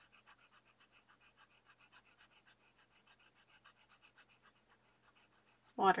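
Marker tip scratching back and forth on paper as a page is coloured in, about six or seven quick, faint strokes a second.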